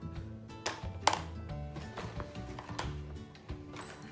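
Background music, with a few sharp snips and clicks from scissors cutting open the toy's cardboard and plastic packaging, the loudest about a second in.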